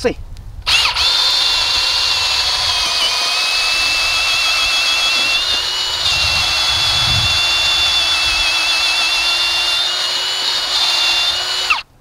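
Hart cordless drill spinning a 7/8-inch auger bit down into the soil: a steady motor whine that starts about a second in and cuts off abruptly just before the end. Low churning from the bit in the dirt comes through around the middle.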